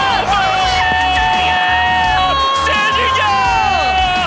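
A television football commentator's drawn-out shout of "goal" as a free kick goes in, held in two long breaths that each fall away at the end, over a cheering stadium crowd. Background music plays underneath.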